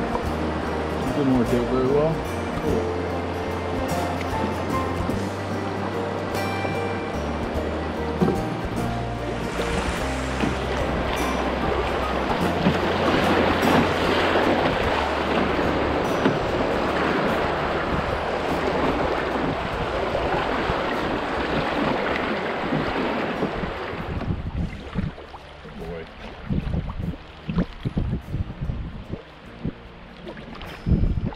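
Rushing water of a river rapid heard from a canoe running it, loudest in the middle, with background music carrying a steady bass line under the first half. Near the end the water noise drops away and low thumps of wind on the microphone come through.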